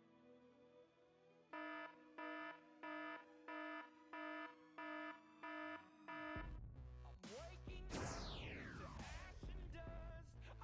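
An electronic alarm beeping seven times, about one and a half beeps a second. About six seconds in it gives way to a much louder rumbling noise with a high whistle falling steeply in pitch.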